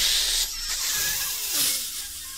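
A burst of loud, hissing radio static, starting suddenly. It is a sound effect imitating a crackly space-to-ground radio transmission in a parody of the moon-landing broadcast.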